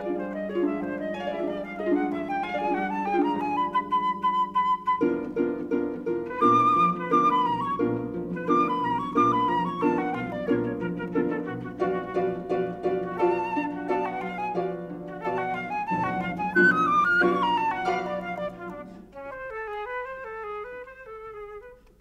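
Flute and harp duo playing: the flute's melody climbs to a held high note about four seconds in over repeated harp chords, then moves on through quicker figures. Near the end the texture thins and grows quieter.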